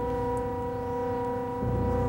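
A steady electronic drone of several held tones over a low hum, with the low hum growing louder about one and a half seconds in.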